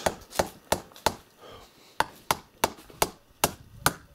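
Hammer driving nails into a wooden shed door to nail it shut: sharp knocks, about three a second, in two runs with a pause of about a second between them.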